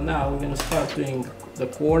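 Only speech: a man's voice, soft and partly unclear, with a short pause before he speaks again near the end.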